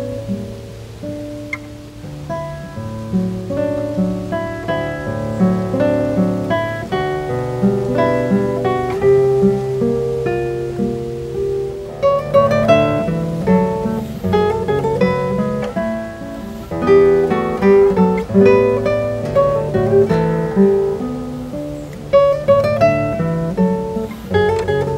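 Solo classical guitar with nylon strings, played fingerstyle: a slow melody of plucked notes over held bass notes, which grows busier and louder about halfway through.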